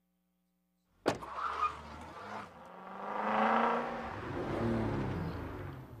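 A second of silence, then a sharp click and a vehicle engine revving, its pitch climbing and then falling away: a produced sound effect opening a car-dealer spot.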